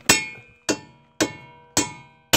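Hammer blows on steel at a Mazda Miata's wheel hub: four sharp, ringing strikes about half a second apart, bending back the metal behind the hub so a new wheel stud can slide in.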